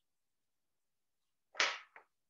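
Near silence, then about one and a half seconds in a single short, sharp noise that dies away quickly, followed by a faint click at the very end.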